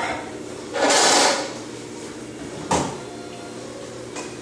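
Electric potter's wheel running with a steady hum while a rib scrapes against the side of a spinning stoneware vase; the loudest scrape comes about a second in, and a sharper one follows near three seconds.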